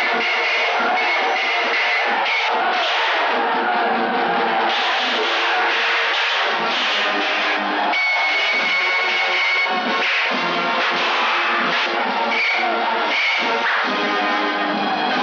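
Loud, busy 1970s Hindi film action background score with many sharp hits.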